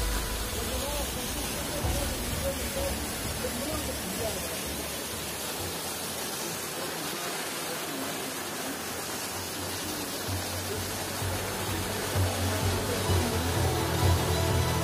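Steady rushing of a small waterfall pouring over rock, with faint music and voices underneath.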